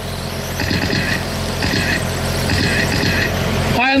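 Radio-controlled sprint cars running laps of a small oval: a steady whirr of electric motors and tyres, with a high motor whine that rises and fades three or four times as cars pass.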